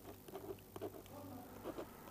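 Faint pen strokes scratching and tapping on paper in short, irregular ticks over a low, steady electrical hum.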